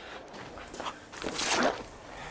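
A man's strained, choked gasps as he is held by the throat: two short rough breaths, the second and louder about a second and a half in.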